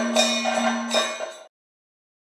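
Ringing metal percussion of a Kathakali accompaniment, struck in a steady beat of about two to three strikes a second over a held tone. It cuts off suddenly about one and a half seconds in, leaving silence.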